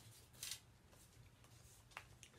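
Near silence, with one short rustle of a clear plastic sticker sheet being handled about half a second in and a faint click near the end.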